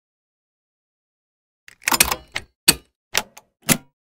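Sound effects of an animated logo ident: silence, then about two seconds in a quick cluster of sharp clacks, followed by single sharp clacks about every half second.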